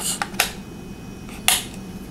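Plastic battery door on the back of a small LED clock being pressed into place: a few light clicks in the first half second, then one sharper click about one and a half seconds in.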